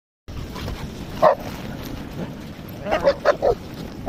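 Dogs barking in play: one bark about a second in, then a quick run of four short barks near the end.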